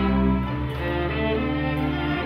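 A live string ensemble of violins and cellos playing slow, held bowed chords, the harmony moving to new notes about half a second in and again a little past a second.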